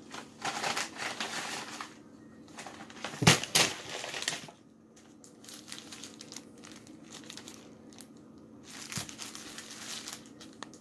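Paper burger wrapper and paper takeout bag crinkling and rustling as a wrapped fast-food burger is handled and unwrapped. The crinkling comes in irregular bursts, loudest a little over three seconds in, then softer.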